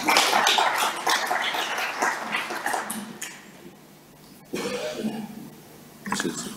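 Audience applauding, the clapping fading away about three to four seconds in.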